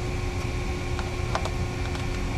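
Steady low rumble of industrial machinery with a constant hum. A few faint light clicks as gloved hands twist a wire tie around a bundle of insulated wires.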